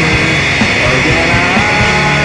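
Loud rock band recording with no singing: distorted electric guitar holding and bending notes over bass and drums.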